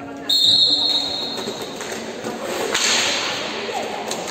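Referee's whistle, one steady high blast of about a second and a half, signalling the restart of play in a roller hockey match. A sharp knock follows near the end, with voices echoing in the hall.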